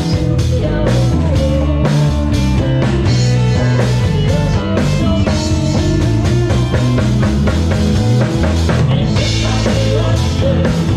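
Live Latin band playing, the drum kit driving a steady beat over bass and percussion.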